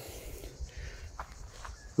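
Footsteps on dry grass and leaf litter, a few faint crunches over a low rumble.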